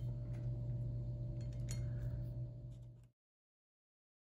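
Skittles candies being set down one at a time on a plate, a few faint light clicks over a steady low hum. The sound cuts off abruptly to silence about three seconds in.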